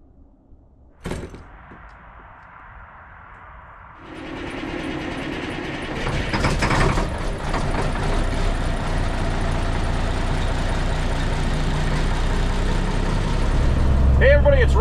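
Semi truck's diesel engine running steadily, louder from about four seconds in and again from about six. A single sharp knock comes about a second in.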